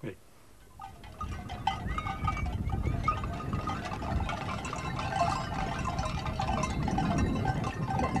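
A large flock of sheep on the move: a steady low rumble of many hooves on sandy ground with scattered bleats over it, starting about a second in.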